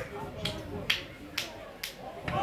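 Five sharp, evenly spaced hand claps, about two a second, over faint voices.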